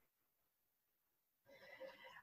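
Near silence: a pause between spoken sentences, with a faint, brief voice-like sound about one and a half seconds in, just before speech resumes.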